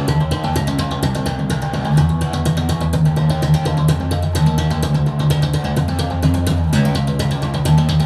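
Electric bass played fingerstyle: a fast, even run of sixteenth notes on low strings, each note struck hard through the string for a bright, chiming attack. The low pitch changes about two seconds in and again near the end.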